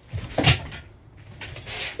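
A person throwing a strike: a quick swish and thud of the movement about half a second in, then a softer rustle near the end.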